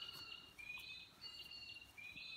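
Faint bird chirping: a short high call with a slight upward slide at its start, repeated steadily about three times in two seconds.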